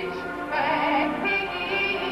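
A woman singing with a strong vibrato over instrumental accompaniment, starting a new phrase about half a second in.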